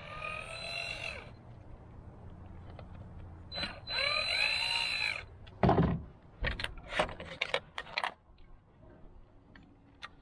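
Cordless drill-driver backing out the screws of an e-bike's controller cover, running in two short spins, about a second at the start and again around the fourth to fifth second, its whine rising and falling. A loud knock follows, then a string of sharp clicks as the loosened cover and parts are handled.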